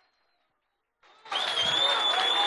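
A studio audience bursts into applause with a long, high, steady whistle over it. It starts suddenly about a second in, after a moment of silence.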